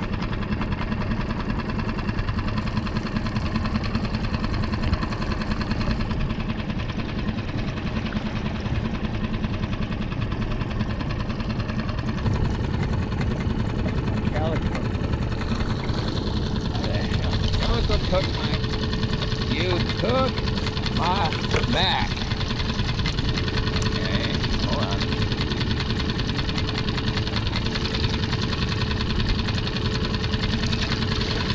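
Small outboard motor on a skiff running steadily, a constant low drone.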